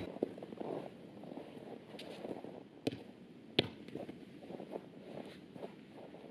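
A few short sharp knocks over a quiet outdoor background: a faint one about two seconds in, then two clearer ones under a second apart about three seconds in.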